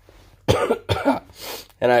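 A man's short bout of coughing: harsh coughs starting about half a second in, then he begins to speak.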